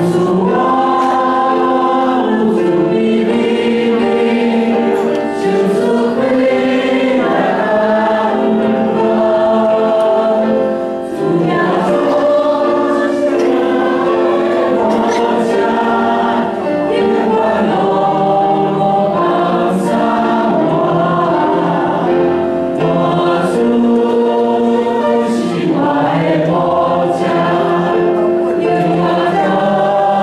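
A small mixed group of men's and women's voices singing a Taiwanese-language worship song together through microphones, in sustained, held phrases.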